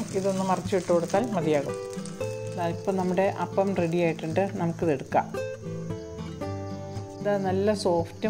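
Background music with a melodic lead over held notes. Underneath it there is a faint sizzle of a rice-flour kallappam cooking on a hot non-stick tawa.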